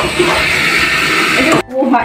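Indistinct background voices with music, cut off abruptly about one and a half seconds in, after which a voice begins speaking.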